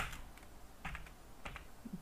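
Typing on a computer keyboard: a few scattered keystrokes, one sharp click at the start and then fainter taps.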